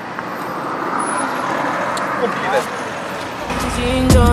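Roadside traffic noise as a road vehicle passes, swelling about a second in and then easing off. Background music with a heavy bass comes in near the end.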